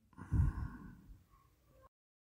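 A short, soft exhale or sigh from a person, starting about a quarter second in and fading out within about a second, followed by complete silence.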